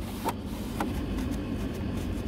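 A rag wiping and rubbing the plastic centre-console cubby of a car, with a couple of small clicks, over a steady low rumble.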